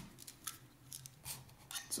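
Light, scattered clicks and small taps of a solder spool and its wire being handled and threaded into an acrylic spool holder.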